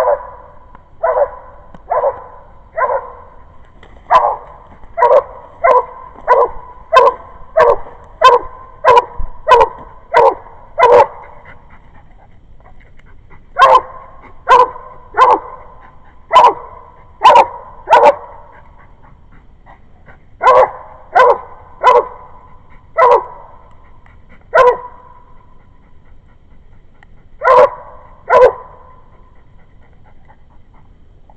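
Coonhound barking up a tree, repeated loud barks about one and a half a second in runs with short pauses between: the hound's treed bark, telling the hunter that the raccoon is up the tree.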